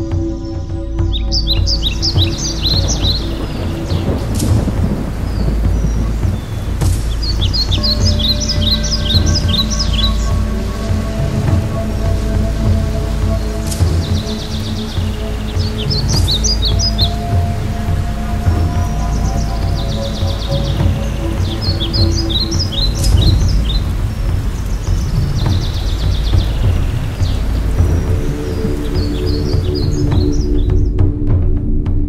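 A bird singing a two-second burst of rapid high notes about every five seconds over steady rushing water noise with a deep low rumble. Soft sustained music tones sit underneath.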